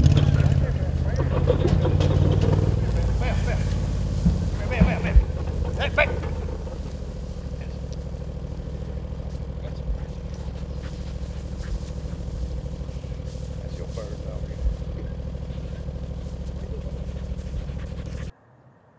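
A vehicle engine running steadily at low speed, louder for the first six seconds and then quieter. A few short sharp sounds stand out about four to six seconds in.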